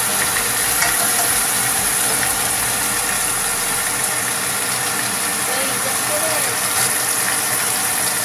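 Beef slices sizzling in a hot nonstick wok: a steady hiss.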